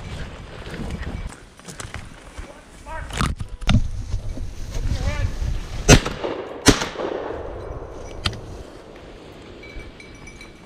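Shotgun fired twice at a flushing woodcock, two sharp shots less than a second apart, each followed by a brief echo through the woods.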